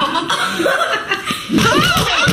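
Several people laughing and chuckling, with bits of talk mixed in.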